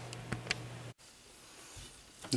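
Faint room tone with a steady low hum and two small clicks, cut off suddenly about a second in by an edit, then near silence.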